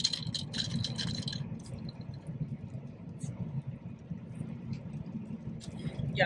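Steady low road and engine noise inside a moving car's cabin on a rain-wet highway. A few light clicks and rattles come in the first second and a half.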